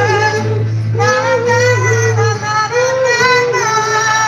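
Live singing with acoustic guitar through a hall PA: one voice sings in phrases of long held notes that step up and down, with a short break about a second in, over a steady low hum.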